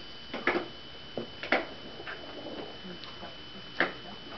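A few short knocks and rustles, like handling noise, the sharpest near the end, over a faint steady high whine.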